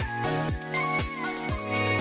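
Electronic background music with a steady kick-drum beat, about two beats a second, under sustained synth notes.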